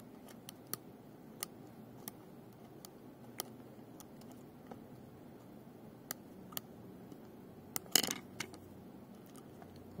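A small screwdriver turning a screw through a 3D-printer hotend's heat block into the heat sink's threads: sparse small metal clicks about once a second as the tip catches and the screw turns, with a louder short run of clicks about eight seconds in.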